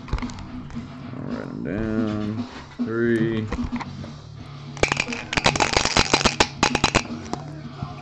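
Background music with a sung melody, then about halfway through a burst of rapid clicking and crackling lasting about two seconds as a trading-card box and its packaging are handled.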